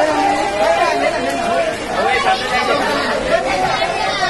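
Several men talking and calling out over one another, a loud jumble of voices.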